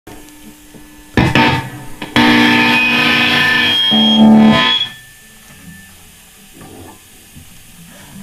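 Distorted electric guitar: a chord struck about a second in and left to fade, then a second chord held from about two seconds, shifting lower near four seconds and cut off sharply just before five; after that only faint, scattered string sounds.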